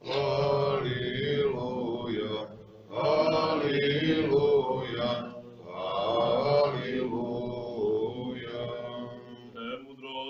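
Orthodox liturgical chant: a few long sung phrases on sustained notes, with short breaths between them.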